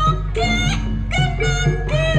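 Live jaranan gamelan music: a high melody that slides between notes, over a steady low accompaniment.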